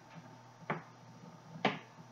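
Two light clicks about a second apart: a spoon knocking against the inside of a drinking glass as the glass is handled.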